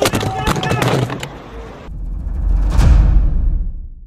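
Shouts and a few sharp knocks from a skateboard fall for about two seconds, then a sudden cut to a title-card sound effect: a deep boom with a whoosh, the loudest part, that fades out near the end.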